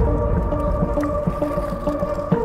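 Background music: a new track begins with soft, sustained synth tones over a short low note repeating about three times a second.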